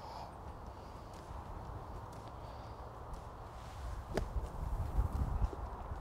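A single crisp click of a golf club striking the ball on a short chip, about four seconds in, over a steady rumble of wind on the microphone.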